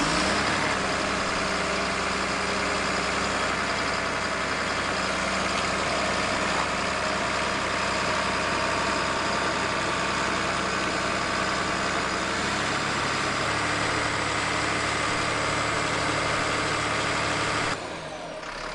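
Crawler dozer's diesel engine running steadily as the machine moves. The engine note drops a little about twelve seconds in, and the sound falls quieter just before the end.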